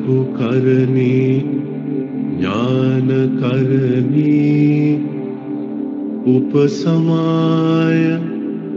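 Buddhist chanting: a voice singing long, held notes that slide into pitch, in several phrases over a steady low drone.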